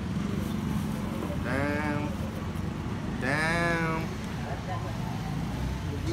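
Two drawn-out bleat-like calls, each under a second, the second louder and rising then falling in pitch, over a steady low street rumble.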